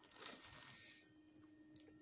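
Near silence with a faint rustle during the first second as a care-package tote with clear plastic pockets is handled, then fainter room tone with a low steady hum.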